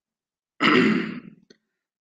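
A man's short non-speech vocal sound from the throat, breathy with some voice in it. It starts suddenly about half a second in and trails off within a second, followed by a faint click.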